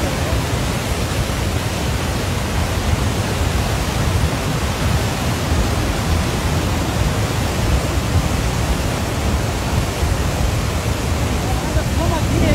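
Loud, steady rushing of a landslide debris flow: a torrent of muddy water, mud and rock pouring down the slope and along the foot of buildings.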